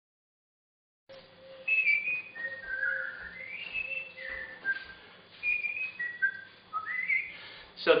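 A person whistling a tune: a string of short held notes and upward slides, over a faint steady hum.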